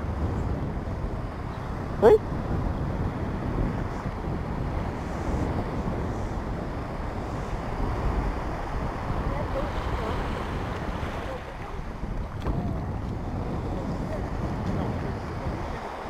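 Wind buffeting the microphone over small waves washing onto a sandy beach, a steady rough rush with the low end heaviest.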